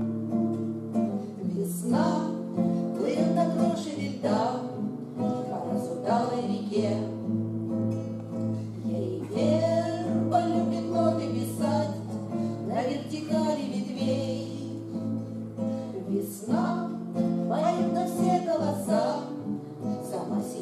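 Two women singing a Russian bard song in harmony to a strummed acoustic guitar, with steady chords and sung phrases rising and falling every few seconds.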